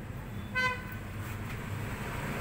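A brief single horn toot about half a second in, one steady high note, over a steady low background hum.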